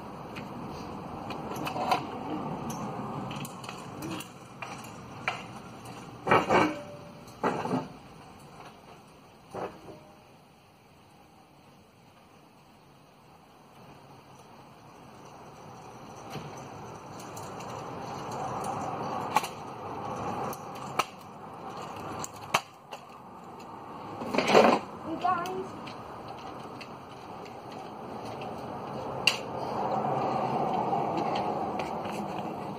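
Stunt scooter wheels rolling on rough tarmac, a grinding hiss that fades almost away about ten seconds in as the scooter moves off and builds again as it comes back. Sharp clacks and knocks from the deck and the rider's feet, the loudest a clatter near the middle of the second half.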